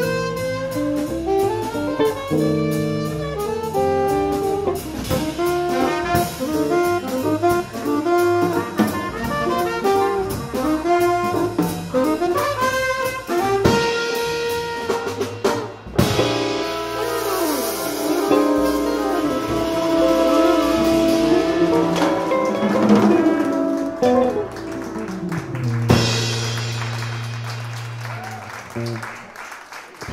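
A small jazz band of saxophones, trumpet, guitar, upright bass and drum kit is playing an up-tempo swing passage. About sixteen seconds in the sound breaks off with a sudden hit and a burst of cymbal wash. The band then ends on a long held low chord that fades away near the end.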